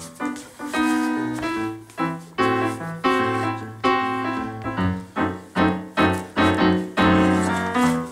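Piano playing a melody of struck notes, each note dying away, the notes coming quicker in the second half.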